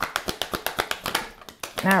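A deck of oracle cards being shuffled from hand to hand: a rapid run of light card slaps and flicks, about eight to ten a second, that stops about a second and a half in.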